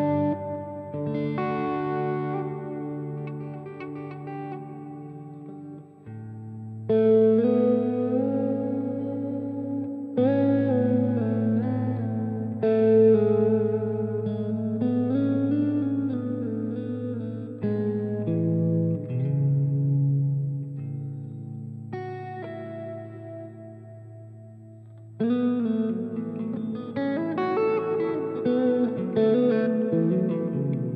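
Clean electric guitar played through the Sonicake Matribox II's Church reverb with the mix and decay turned right up. Chords and single notes, some of them bent, are struck every few seconds, and each rings on in a long reverb tail.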